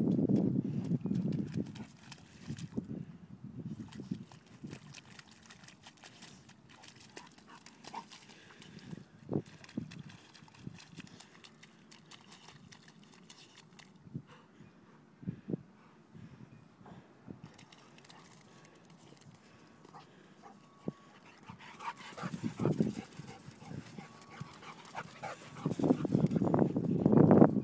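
A dog digging and splashing in a muddy puddle: scattered wet slaps and scrapes of its paws in the mud and water, louder in the first couple of seconds and again near the end.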